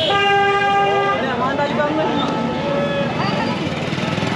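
A vehicle horn sounds one steady held note for about the first second, over street traffic and people's voices.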